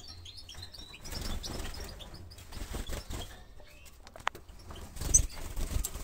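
European goldfinches flying about a wire cage: wingbeats in short flurries, loudest about five seconds in, with a few chirps. One of them is a bird whose broken wing has healed, flying without trouble.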